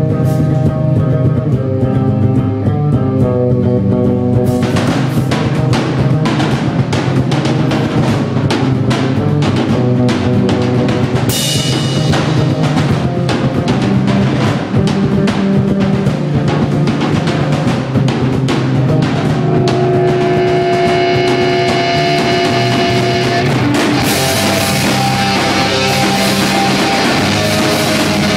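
A live rock band playing loud, heavy rock. Electric bass and guitar open the song alone, and the drum kit comes in about four and a half seconds in. Near the end the full band gets louder and fuller.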